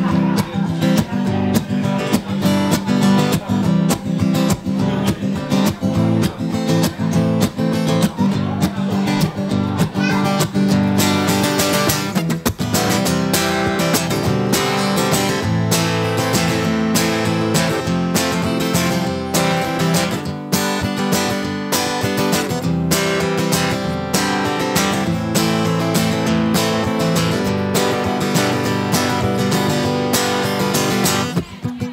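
Steel-string acoustic guitar strummed in a song's instrumental intro, growing fuller and brighter about twelve seconds in.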